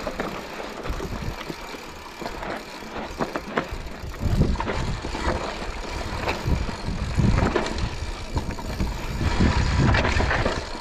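Mountain bike rolling downhill over loose gravel and rocks: tyres crunching over stones and the bike rattling and clicking over bumps, with a low rumble that grows heavier about four seconds in.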